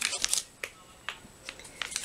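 Handling noise: a quick run of light clicks and rustles in the first half second, then a few single clicks spaced through the rest.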